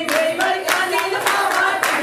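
A group of women clapping in steady rhythm, about four claps a second, with women's voices singing a Punjabi folk song over the claps.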